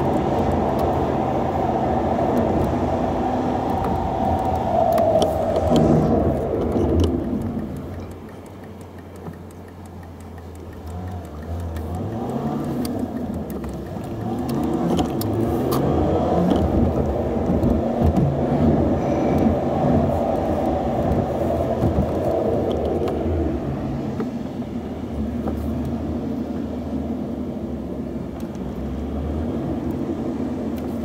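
Car driving through city streets: steady engine and tyre noise that drops away about eight seconds in and builds back up over the next few seconds, the engine note rising.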